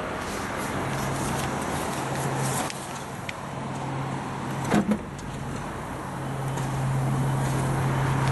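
A clunk about five seconds in as the Vauxhall Mokka's tailgate is unlatched and lifted open, over a steady low hum and outdoor background noise.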